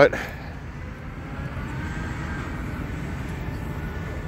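Steady low rumble of vehicle engines and traffic, with a faint whine that rises and then falls through the middle.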